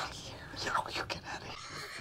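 Faint, quiet speech, close to whispering.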